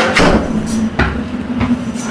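Footsteps on stairs: about five dull, uneven knocks over a steady low hum.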